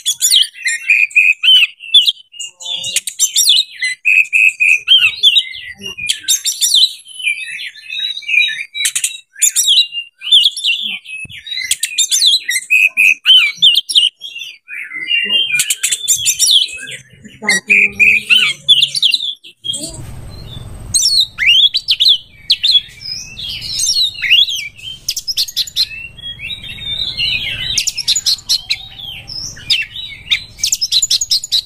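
Caged oriental magpie-robin (kacer) singing a long, varied song of quick whistled and chattering phrases, with sharp clicks among them. About two-thirds of the way through, a low steady rumble comes in beneath the song.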